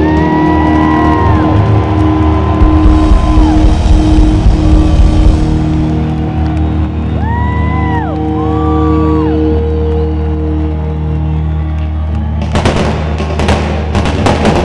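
Live rock band in an arena holding a long sustained chord, with whoops rising and falling over it and the crowd cheering. About a second and a half before the end, loud crashes break in.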